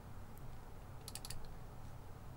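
Faint clicking of a computer mouse: a single click, then a quick run of three or four clicks about a second in, over a low steady hum.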